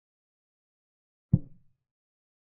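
A single short knock of a chess move sound effect, a piece set down on the board, a little over a second in, dying away quickly; otherwise silence.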